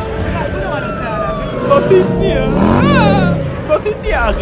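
Voices calling out, their pitch swooping up and down over a noisy background, loudest a little past the middle.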